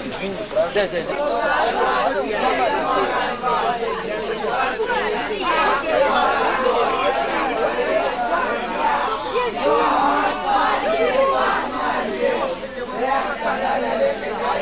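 Several people talking at once, their voices overlapping in steady group chatter.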